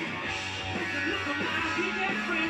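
Rock music with guitar, played from a white vinyl record on a turntable.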